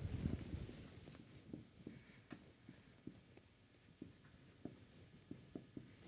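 Marker pen writing on a whiteboard: a faint run of short strokes and taps as a word is written out.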